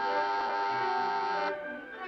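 Orchestral film score of bowed strings holding a sustained chord, which drops off about one and a half seconds in to a quieter string passage.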